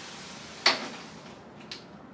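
A closet door being handled: one sharp knock about two-thirds of a second in, then a much fainter click near the end, over low room hiss.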